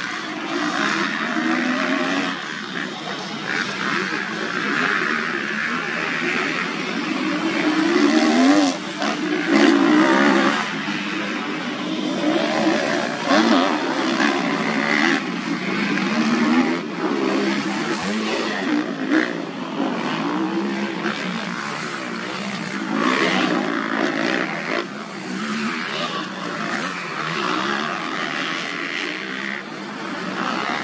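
Several motocross bikes racing, their engines revving up and down in pitch. The sound swells loudest about eight to ten seconds in.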